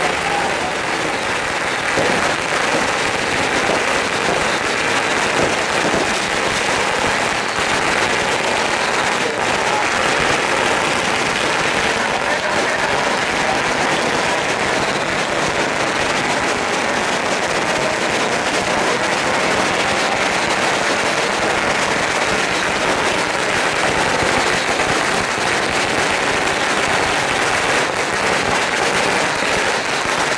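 A long string of firecrackers crackling continuously in a dense, unbroken rattle.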